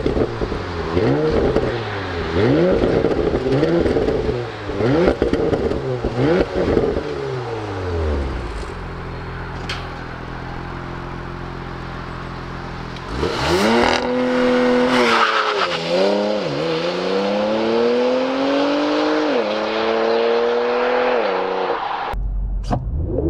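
Porsche Macan Turbo's 2.9-litre twin-turbo V6, heard from behind at the tailpipes, revved in quick blips about once a second, then idling steadily. About thirteen seconds in it launches and pulls away hard, the engine note climbing and dropping back through several upshifts.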